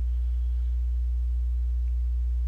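Steady low electrical hum with a few fainter overtones above it, unchanging in level: mains hum in the recording.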